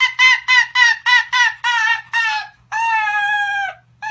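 Arctic fox calling with its mouth wide open: a rapid string of short, high, cackling yelps, about four a second. After a brief break about two and a half seconds in, it gives one longer held call.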